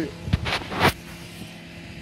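A low thump and two brief rustles of handling noise on a handheld camera's microphone as it is swung around, over a steady low hum.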